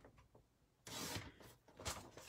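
Paper scraps being handled: a brief rustle and slide of cardstock about a second in, then a short click near the end.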